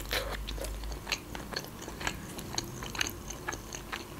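Biting into and chewing grilled shashlik meat pulled off a wooden skewer: a run of small, irregular wet clicks and smacks of the mouth.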